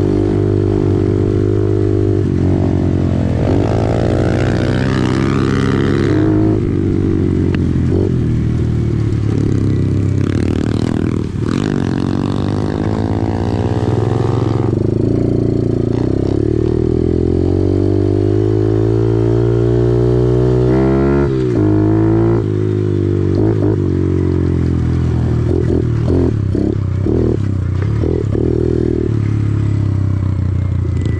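Kawasaki KLX110R pit bike's small four-stroke single with a Big Gun EVO full exhaust, ridden under throttle: the engine note climbs and drops repeatedly as it is revved and shifted through the gears.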